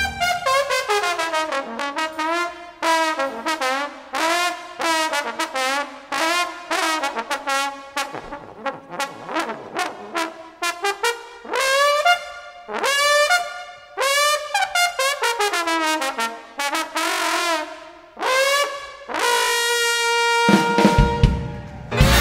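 Unaccompanied jazz trombone cadenza: quick phrases of notes with frequent bends and slides between pitches, broken by short breaths. The big band comes back in about a second and a half before the end.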